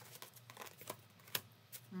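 A deck of tarot cards being shuffled by hand, the cards clicking against each other in quick, irregular ticks, with one louder snap about one and a half seconds in.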